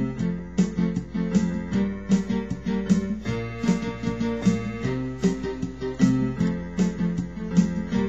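Electronic keyboard with a piano sound playing an instrumental intro of repeated chords in a steady rhythm.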